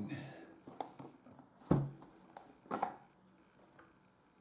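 A rigid cardboard product box being handled and its hinged lid opened: a few short taps and knocks of the packaging, with quieter rustling between them.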